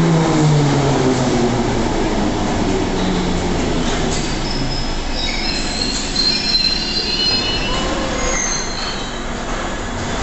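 Bakerloo line 1972 Tube Stock train braking to a stop at the platform: its motor whine falls in pitch over the first couple of seconds, then several high-pitched brake squeals come in from about four seconds in as it slows to a halt.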